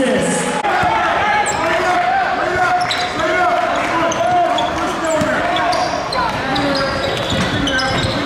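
Live basketball game sound in a gym: a basketball bouncing on the hardwood, short sneaker squeaks, and indistinct voices of players and spectators echoing in the hall.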